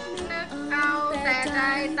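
A woman singing a Thai-language song over an instrumental backing, her voice high with vibrato and sliding pitch.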